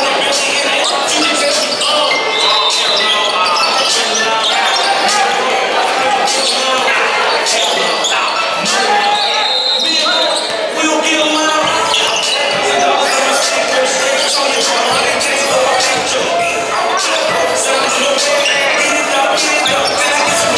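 Basketballs bouncing on a concrete floor in a large echoing hall, with many people's voices throughout.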